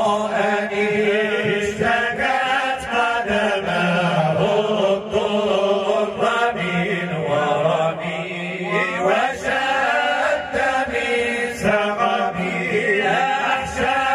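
Men's voices chanting Arabic devotional verses, with long held notes whose pitch wavers in ornamented runs over a steady low held tone.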